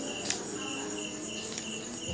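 Crickets chirping steadily in the background, a constant high-pitched trill.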